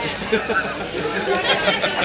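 Indistinct chatter of voices.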